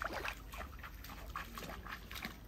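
Muddy paddy water dripping and splashing as rice seedlings are pushed by hand into the flooded mud, a soft, quick, irregular patter of small splashes.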